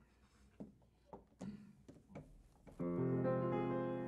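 Piano: a few faint knocks, then about three seconds in a full chord is struck and rings on, slowly fading.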